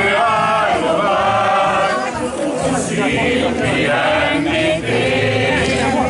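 A group of people singing a Hungarian folk song together, with the voices continuing throughout.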